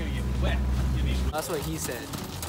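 A boat's motor running with a steady low drone, with a voice over it. The drone cuts off abruptly a little over a second in, and a young man's voice follows.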